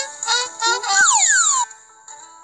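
Playful cartoon music and sound effects from a children's Bible story app: quick chirpy pitched notes, then a long falling whistle-like glide about a second in that cuts off shortly after.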